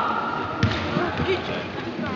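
Basketball bouncing on a sports-hall floor, with one clear bounce a little over half a second in, under people talking.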